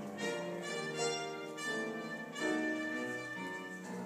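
Live performance of a Christmas boogie-woogie song by a school chorus with instrumental backing, including brass.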